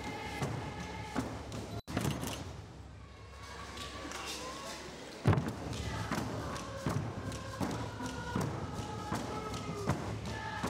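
Frame drums beating a slow, steady pulse with voices singing held notes. The sound cuts out for an instant about two seconds in, is quieter for a few seconds, and comes back with a loud drum beat about five seconds in.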